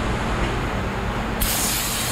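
Aerosol brake cleaner starts spraying about one and a half seconds in, a loud steady hiss, over a steady low background hum.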